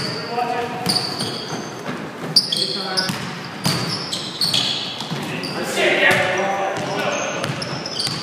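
Indoor basketball game on a hardwood court in a large, echoing gym: a basketball being dribbled in repeated knocks, sneakers squeaking, and players calling out, with a louder shout about six seconds in.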